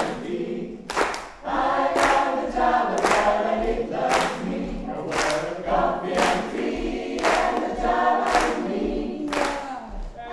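Mixed choir of men and women singing a swing tune together, with hand claps on the beat about once a second.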